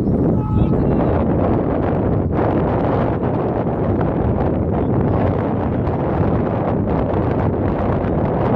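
Wind blowing across the microphone, a steady low noise without a break.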